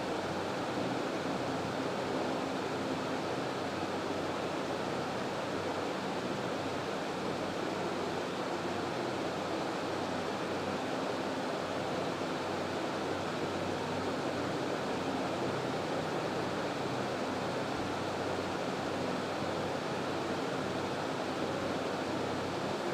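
Steady, even background hiss with nothing else over it, unchanging throughout.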